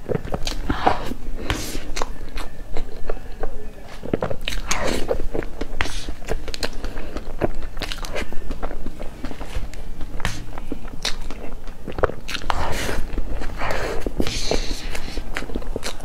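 Close-miked wet chewing and mouth sounds of a person eating soft cream-layered cake, a dense run of small clicks and smacks.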